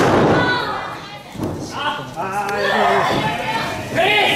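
A wrestler's body slamming onto the ring canvas with a single thud right at the start, followed a little later by shouting voices.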